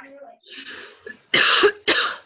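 A woman coughs twice in quick succession, about a second and a half in.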